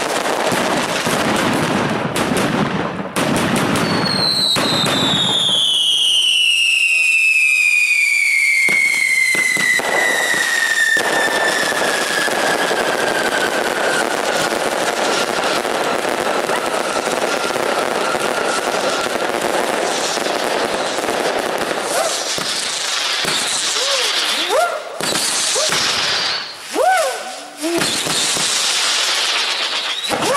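Daytime fireworks battery firing continuously: dense crackling and bangs from coloured-smoke comets and shells. A long whistling tone starts about four seconds in and falls slowly in pitch for some fifteen seconds. Several short rising-and-falling whistles come near the end.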